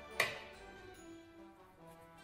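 Soft instrumental background music, with one sharp click just after the start.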